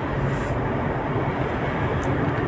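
Steady drone of road and engine noise inside a moving car's cabin, with a low hum underneath.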